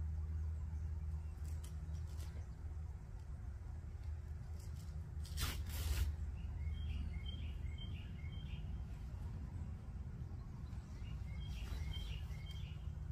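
A bird calling in quick runs of four or five short, repeated high chirps, once in the middle and again near the end, over a steady low outdoor rumble. About five seconds in, a brief rustle or scrape is the loudest sound.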